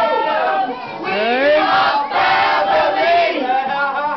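A group of adults singing loudly together in a sing-song, many voices at once with some held notes, with a brief lull about a second in.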